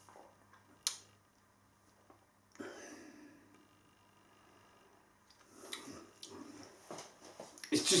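A single sharp click about a second in, then faint mouth and breath sounds of a man drinking ale from a pint glass and breathing out.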